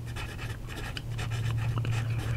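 A TWSBI Vac 700R fountain pen's steel nib writing on grid notebook paper: faint, short strokes of the nib across the page as letters are formed. A low steady hum runs underneath.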